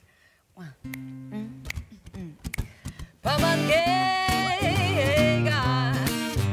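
Acoustic guitar begins a swing-rhythm accompaniment with plucked notes about a second in, and a woman's jazz vocal enters loudly over it about three seconds in.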